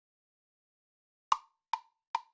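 GarageBand's metronome count-in: silence, then two short, sharp clicks a little under half a second apart near the end, the first louder as the accented first beat of the bar.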